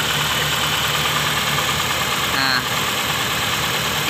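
Honda City i-DSI four-cylinder twin-spark engine idling steadily with the rear ignition coil of cylinder 3 unplugged, so that cylinder is misfiring and the engine runs rough. The misfire points to a dead spark plug on the cylinder's other coil, most likely, in the mechanic's words, the plug rather than the coil.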